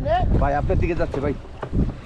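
A man's voice speaking a few short, untranscribed phrases over a low wind rumble on the microphone, dying down near the end.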